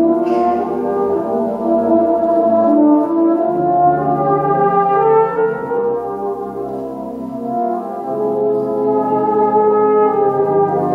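Euphonium solo over a brass band accompaniment, playing a slow melody in long held notes over sustained chords.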